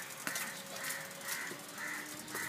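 Crows cawing, a run of about five short caws at roughly two a second.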